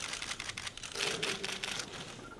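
Several camera shutters clicking rapidly and overlapping, many clicks a second, as still cameras fire at once.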